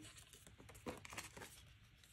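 Faint crinkling and rustling of polymer banknotes being picked up and handled, with a few soft rustles about a second in.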